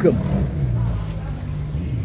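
Road traffic: vehicle engines running on a street, a steady low hum under a noisy background.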